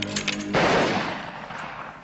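Film soundtrack: music stops and a single loud bang sounds about half a second in, then fades away over about a second and a half.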